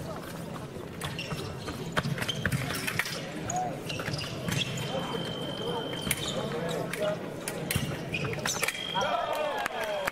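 Fencers' feet stamping and sliding on the piste during a foil bout, with sharp clicks and knocks throughout and voices in the hall. Near the end a high steady tone sounds and a voice rises over it as the touch is scored.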